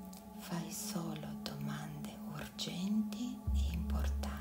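A woman whispering over a steady ambient music drone; a deep low hum swells in about three and a half seconds in.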